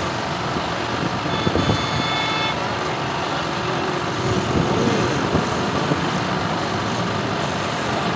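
Steady, dense noise of a large outdoor crowd mixed with vehicle engines, with a brief high-pitched tone about a second and a half in.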